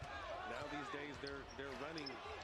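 Faint basketball game broadcast audio: a play-by-play commentator's voice over the court sounds of a ball being dribbled.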